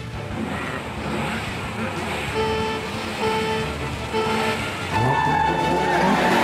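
Race-start countdown signal: three short low beeps evenly spaced, then a longer higher beep for go. Under it, cartoon go-kart engines idle and rev.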